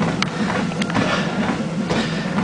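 Treadmill motor and belt running with a steady low hum, and two light clicks in the first second.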